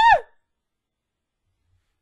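The end of a spoken exclamation, "Oh!", with a high, swooping pitch, stopping about a third of a second in; after that, silence.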